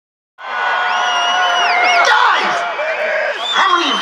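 A large rock-concert crowd cheering and whooping, cutting in a moment after the start. A high, held 'woo' bends up and down over the cheers, then a man's voice comes over the PA near the end.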